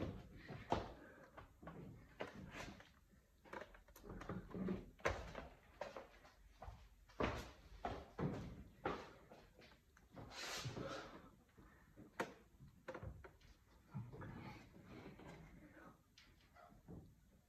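Faint, irregular knocks and clatter from parts or tools being handled, with a brief rushing noise about ten seconds in.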